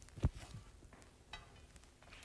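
Quiet room tone with one soft, low thump about a quarter second in and a fainter brief sound past the middle.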